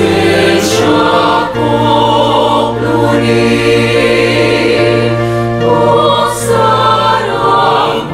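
Mixed choir of men's and women's voices singing in harmony, holding long chords that shift every second or two, with crisp sibilant consonants.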